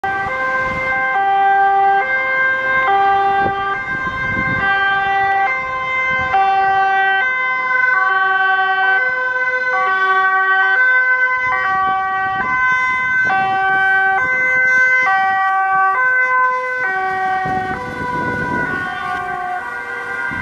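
Ambulance siren in two-tone mode, alternating between a high and a low tone about every half second. The vehicle's engine and tyres grow louder near the end as it passes close.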